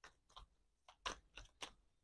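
A deck of tarot cards being handled and shuffled by hand: about five short, faint snaps and rustles of card on card.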